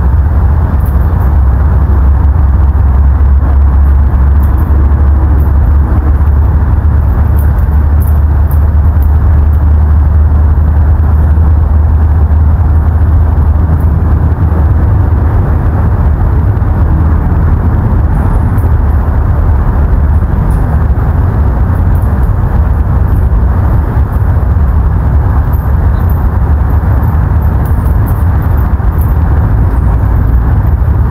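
Wind buffeting an outdoor microphone: a loud, steady low rumble with a rushing hiss above it.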